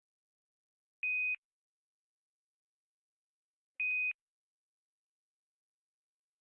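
Two short electronic beeps at the same high pitch, about three seconds apart, against dead silence.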